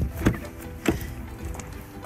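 Background music, with two sharp clicks about two-thirds of a second apart as the rear door of a Mercedes SUV is unlatched and swung open.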